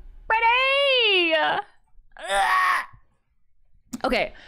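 A woman's long wordless vocal exclamation, its pitch rising slightly and then falling away. About two seconds in comes a shorter, breathier second vocal sound.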